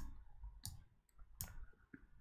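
Faint clicking of a computer mouse: three short, sharp clicks about two-thirds of a second apart.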